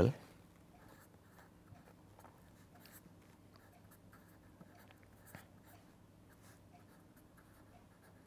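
Pen writing on paper: faint, scattered scratching strokes and small ticks as a formula is written out.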